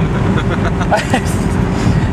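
Steady engine and road rumble with a constant low hum, heard from inside a moving car. A short voice sound cuts in about a second in.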